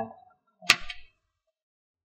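A single sharp tap of chalk on a blackboard about two-thirds of a second in, with a brief scratch after it, as a handwritten line is finished.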